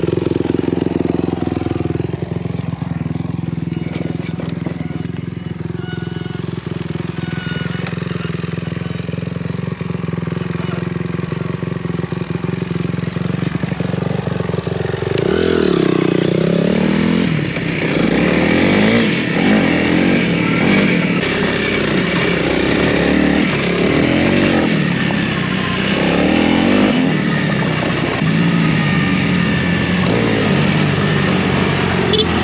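Honda CRF300L's single-cylinder engine idling steadily, then from about halfway through revving up and down again and again as the bike is ridden.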